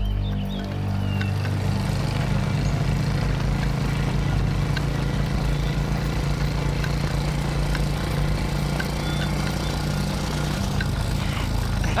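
Several sidecar motorcycle engines running steadily as the column rides along, a continuous low throbbing hum that holds at one level.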